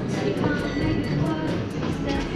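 Store background music playing under a steady rumbling noise.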